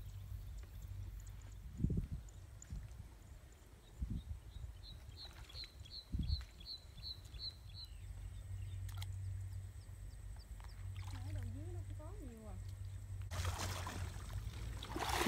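Water sloshing and low thumps as a man wades through a shallow water-lily ditch picking lilies. A bird calls in the middle, a quick run of about nine short high chirps, and a faint voice comes in near the end.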